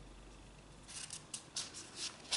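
Sheets of drawing paper rustling as they are handled and turned over, in a few short crackly bursts starting about a second in.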